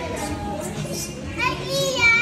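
Children playing and chattering, with a child's high voice calling out about a second and a half in.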